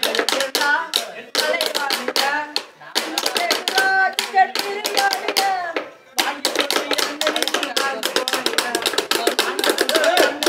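Tamil gana song sung by a young man's voice over rapid tapping of sticks on lengths of green bamboo. The tapping breaks off briefly twice and comes back faster and denser from about six seconds in.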